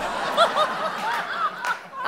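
Studio audience laughing, many voices together, dying away near the end.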